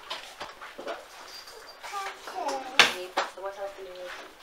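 A young child's voice making short wordless vocal sounds, with one sharp click a little before the three-second mark.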